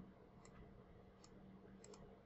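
Near silence with a faint steady hum of room tone and a few faint computer mouse clicks, about half a second, a second and a quarter, and nearly two seconds in.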